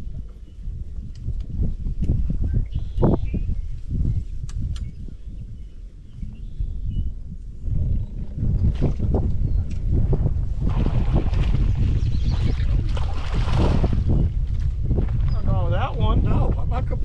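Wind buffeting the camera microphone on an open boat: an irregular low rumble that grows stronger about halfway through, with a few sharp knocks.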